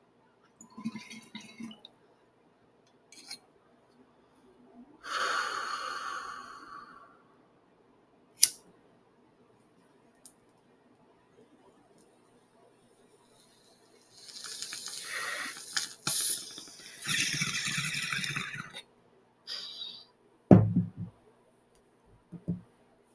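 Glass bong hit: a lighter clicking, then two long pulls with water bubbling through the bong as smoke is drawn, and a short low thump near the end.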